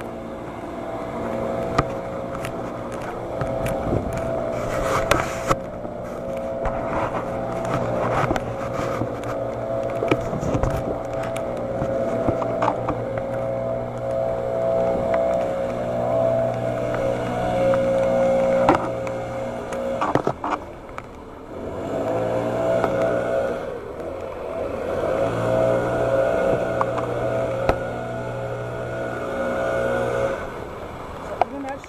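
A vehicle engine running at a steady speed. About twenty seconds in it briefly drops in level and pitch, then picks up again, with scattered clicks and knocks over it.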